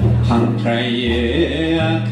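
A man chanting a slow melody through a microphone, holding long notes that step from one pitch to the next, over a low droning accompaniment.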